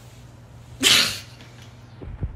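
A single short, breathy burst from a person about a second in, like a sneeze, over a faint steady low hum.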